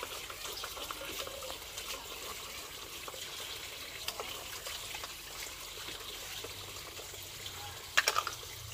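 Water sloshing and trickling in basins as dishes are washed by hand, with frequent small clinks and knocks of bowls and utensils.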